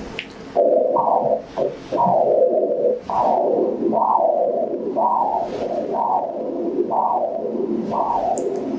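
Pulsed-wave Doppler audio from an ultrasound scanner sampling the main renal artery at the kidney's hilum: a whooshing pulse with each heartbeat, about one a second, starting under a second in, with flow still heard between beats. The resistive index taken from this signal is normal.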